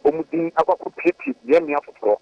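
Speech only: a man talking in quick phrases over a telephone line, his voice thin and cut off above the middle range.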